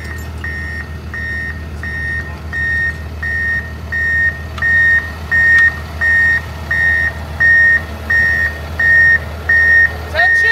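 A heavy machine's backup alarm beeping steadily at about two beeps a second, one high tone, louder from about halfway on. Under it runs the low steady hum of a diesel engine.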